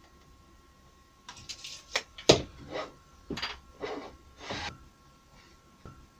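Beech boards being handled on the mitre saw table: a string of wooden knocks and scrapes from about one second in until near the end, the loudest a little after two seconds in. The saw is not running.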